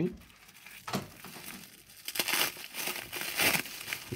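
Plastic bubble wrap crinkling and rustling as it is handled and unwrapped by hand, with a sharp crackle about a second in and busier, louder crinkling in the second half.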